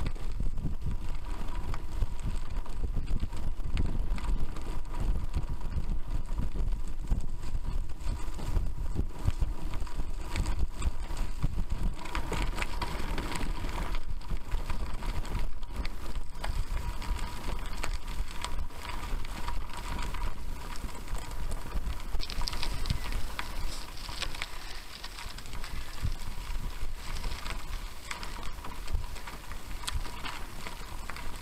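Bicycle rolling over a gravel trail, heard through a bike-mounted camera: a steady rumble of tyres on loose gravel with rapid rattling knocks from the jolting, and wind buffeting the microphone.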